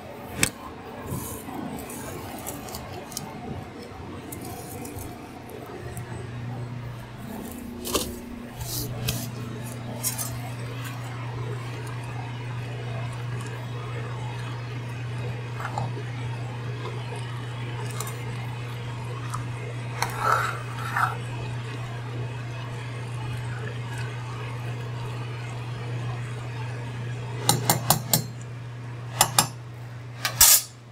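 Metal clinks and knocks of a utensil against a stainless-steel stockpot as boiling spaghetti noodles are stirred, ending in a quick run of taps. A steady low hum sets in about six seconds in and carries on underneath.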